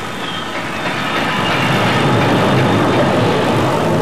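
A Glasgow Subway electric train running: a steady rumble with a faint high whine, growing a little louder over the first second or so.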